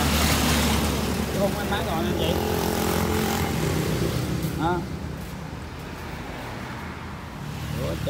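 An engine or motor running with a steady low hum that grows quieter about five seconds in.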